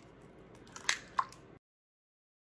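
Eggshell cracking as an egg is broken open over a stainless steel mixing bowl: two short sharp cracks about a second in, then the sound cuts out.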